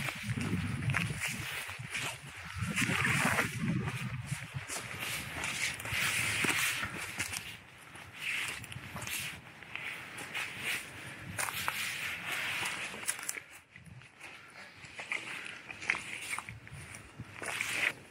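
Footsteps pushing through dense undergrowth, with twigs and branches rustling and cracking against clothing in irregular bursts. The sounds grow quieter in the last few seconds.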